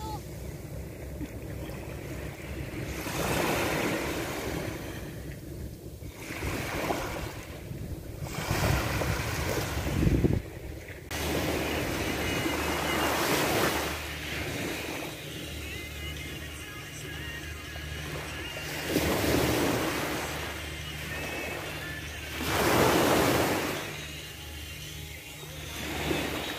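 Small waves breaking and washing up a sandy beach, the hiss of surf swelling and fading several times, loudest a little before the end. A steady low musical bed runs underneath.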